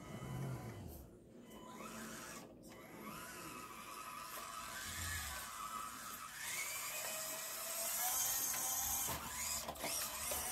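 Panda Hobby Tetra K1 mini RC crawler's electric motor and drivetrain whining as it drives at full speed, the pitch rising and falling with the throttle.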